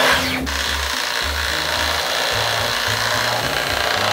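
Dyson cordless stick vacuum running steadily, with a whining hiss as it sucks up wafer crumbs from the table; background music with a low beat runs underneath.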